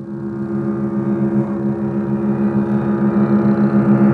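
Two double basses bowing sustained low notes together, a steady drone that grows gradually louder.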